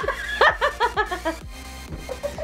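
A person laughing hard in a quick run of short ha-ha laughs that dies down after about a second and a half, over steady background music.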